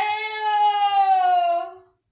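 A woman's long, drawn-out wailing cry held on one steady pitch, dipping slightly and fading out near the end.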